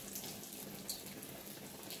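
Pork belly slices sizzling on an electric tabletop grill: a steady hiss with scattered small pops.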